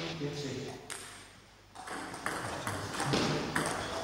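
Table tennis ball being hit and bouncing on the table in a rally: a run of sharp ticks a little under half a second apart in the second half, with a single tick about a second in.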